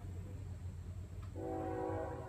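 Distant Nathan K5HLL five-chime locomotive air horn starting a blast about a second and a half in, a steady chord of several notes, over a low background rumble.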